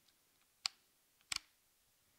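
Canon EOS 700D DSLR body clicking as its mirror and shutter mechanism works: one sharp click, then a quick double click about two-thirds of a second later.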